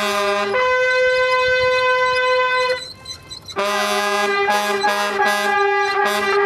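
Military brass playing a ceremonial piece for the flag raising. A short note leads into one long held note, there is a brief break about three seconds in, then a run of shorter notes.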